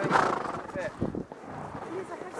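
A horse whinnies right at the start, among the voices of riders, with a few dull hoof thuds about a second in.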